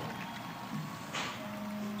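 Faint opening of a played-back live concert recording: an even hiss of hall ambience, with a few soft held musical notes coming in after about a second.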